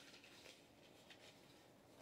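Near silence, with faint rustles of paper pages as a spiral-bound guidebook is leafed through.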